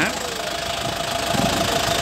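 A truck's engine idling steadily, getting gradually a little louder.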